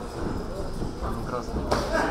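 Boxing-glove punches and footwork on a ring canvas under faint voices, with one sharp smack of a punch landing about three-quarters of the way through.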